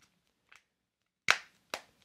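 Two sharp snaps, about half a second apart, as a Nomad Rugged Case's TPU rubber bumper is pressed over the edges of an iPhone 15 Pro Max; the case is a very tight fit.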